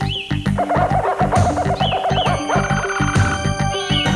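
Upbeat theme music for the opening titles, over a steady bouncing bass. A wavering, warbling melody line jumps to a higher pitch about two and a half seconds in, with short chirping pitch swoops above it.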